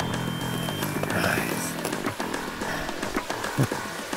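Background music with steady sustained notes.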